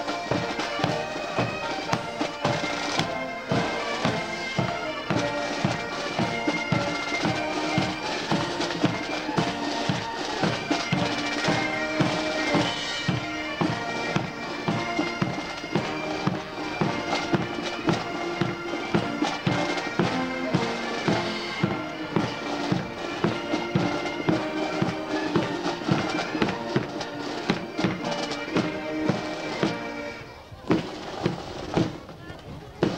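Military pipes and drums playing a march: bagpipes holding a steady melody over an even drumbeat.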